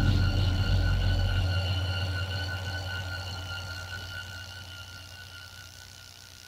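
Electronic music with no drums, a held bass note and thin high synth tones, fading out slowly.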